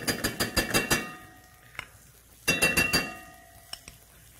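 A metal spoon knocking against cookware as butter is spooned into a saucepan: two quick runs of clinks, one at the start and one past the middle, each leaving a short metallic ring.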